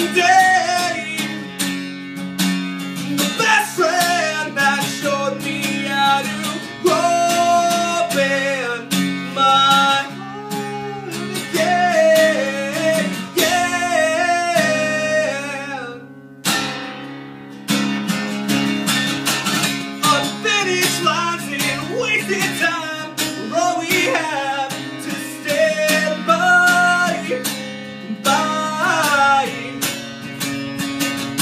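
A man singing while strumming an acoustic guitar, with a short break in the playing a little past halfway through.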